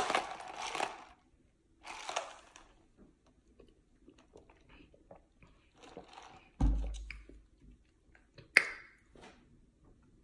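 Quiet mouth sounds of sipping an iced latte through a plastic straw and swallowing, in short scattered bits. A dull low thump comes about two-thirds of the way in, and a short sharp mouth sound follows a couple of seconds later.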